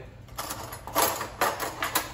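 A few short scrapes and clinks, about four in two seconds, from a glass jar of chopped jalapeños being handled and a utensil working in it.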